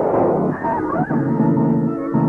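Dramatic background music from an old film soundtrack: held low notes with a short wavering higher line about halfway through.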